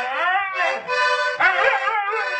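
A dog howling along to accordion music, its howl rising and then falling in pitch over the steady accordion chords, with a second wavering howl starting about one and a half seconds in.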